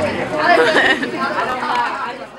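Several people talking over one another: indistinct chatter.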